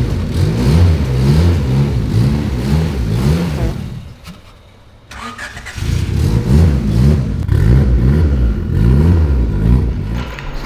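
Honda Civic four-cylinder engine running and being revved in quick, repeated rises and falls while the car is driven slowly. The sound drops away about four seconds in and the engine returns about a second and a half later.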